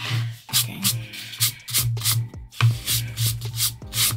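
Eraser rubbing back and forth on sketchbook paper in quick strokes, about three a second, gently erasing pencil sketch lines.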